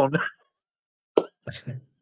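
A man's voice finishing a word, then a gap of dead silence, then a single short pop and two brief bursts of laughter near the end.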